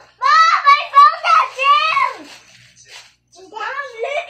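A young child's high-pitched voice, vocalizing without clear words for about two seconds, then starting again near the end.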